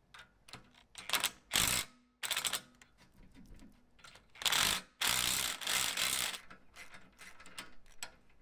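A Ryobi cordless impact tool hammers a bolt down at the tire carrier's pivot. There are a few short bursts in the first few seconds, then a longer run of about two seconds midway. Near the end a hand ratchet clicks faintly.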